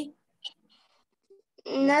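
Speech: a voice finishes a word at the very start, then a pause with only a few faint small noises, and a voice comes in again near the end with a drawn-out, gliding syllable.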